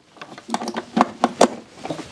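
A quick run of clicks and knocks, starting about half a second in, as a plug and cable are handled and pushed into the front sockets of an EcoFlow Delta 2 portable power station.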